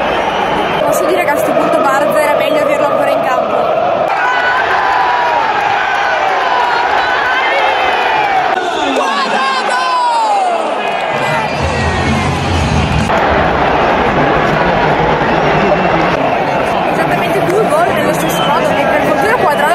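Large football stadium crowd chanting and shouting, with a woman close by yelling among them. The crowd noise changes abruptly several times.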